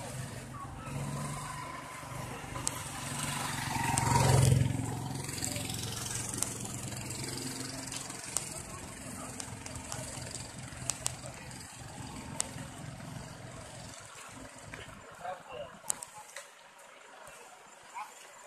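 A motorcycle's engine passing close by, swelling to a peak about four seconds in and then fading, with an engine hum continuing behind it and dying away near the end; a few sharp clicks late on.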